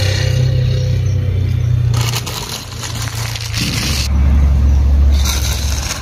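An engine runs with a steady low drone that drops lower a little past halfway. Over it come two short hissing, rustling bursts, about two seconds in and again near the end.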